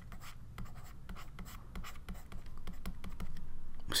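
Stylus writing on a pen tablet: faint, quick scratches and taps of the pen strokes, a little louder near the end.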